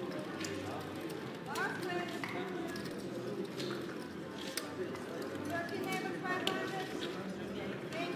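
Casino chips clicking and clacking as they are picked up, stacked and set down on a roulette table, a scatter of short sharp clicks over a background of indistinct voices.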